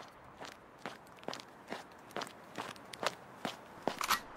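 Footsteps of a person walking at an even pace, a little over two sharp steps a second.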